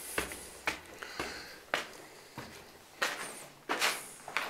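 Footsteps climbing concrete stairs littered with plaster debris, about two steps a second with a pause in the middle, the last steps the loudest.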